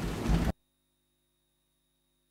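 A brief low rumbling noise, then the audio feed cuts off suddenly about half a second in, leaving near-total silence with only a faint steady electrical hum.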